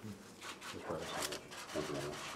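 A quiet pause in the room, with a man's low voice starting up near the end and a few faint clicks.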